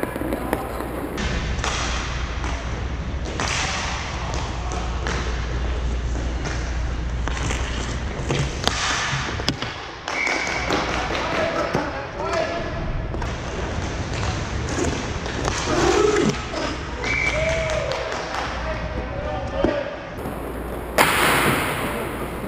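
Inline roller hockey game sounds: scattered knocks and clacks of sticks, puck and goalie pads in play, with players' voices calling out across the rink.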